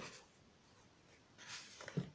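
Near silence with faint room tone, then a brief soft rustle about one and a half seconds in and a small click near the end.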